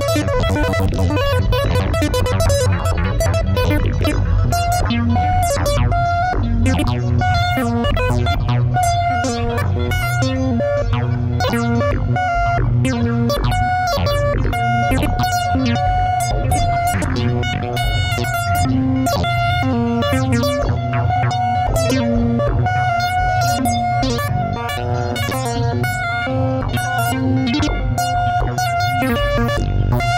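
Eurorack modular synthesizer patch built from Mutable Instruments Stages, Tides and Marbles playing a fast, busy stream of short plucked-sounding synth notes that keep changing pitch over a steady low bass.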